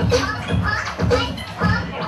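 Turntablist battle routine on vinyl: a chopped voice sample cut in by hand over a steady drum beat, about two beats a second.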